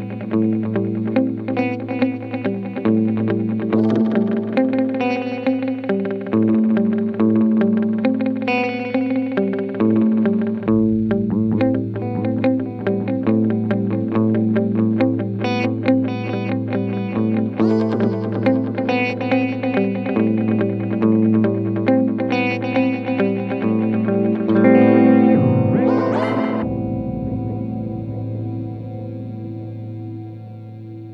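Electric guitar played through a Strymon Volante tape-echo pedal. Its delay repeats are pitch-shifted as the recording speed is switched between half, normal and double speed. A steady low drone runs underneath, a quick rising-and-falling pitch sweep comes near the end, and then the echoes fade away.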